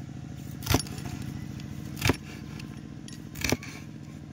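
A large curved knife chopping through a fish onto a wooden cutting board, three strikes about a second and a half apart. A steady engine hum runs underneath.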